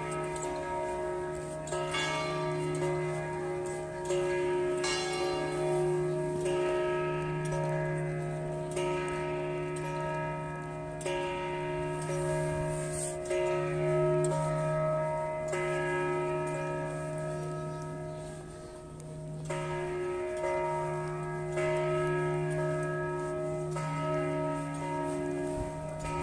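St Mark's Campanile bells ringing the noon bells: a new strike about every two seconds, each ringing on into the next over a steady low hum.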